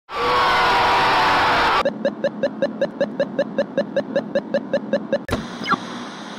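Intro sound effects: a harsh scream lasting nearly two seconds, then a rapid electronic beeping at about six beeps a second, ending with a click and a falling tone.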